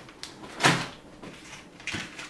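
Hands handling the radio's cardboard box and its packaging: one short knock about two-thirds of a second in, with a few lighter clicks and handling noises around it.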